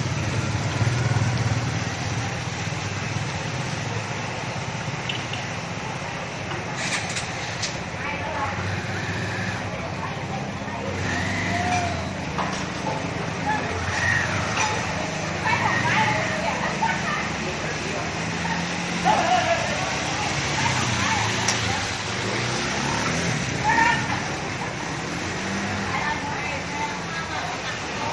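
Traffic running through a flooded street: a low engine rumble under a steady wash of noise, with indistinct voices coming and going.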